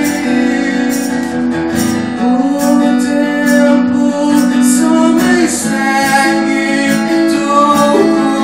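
Live acoustic music: a man singing long, held notes over a strummed acoustic guitar, with hand percussion on a cajón keeping a steady beat.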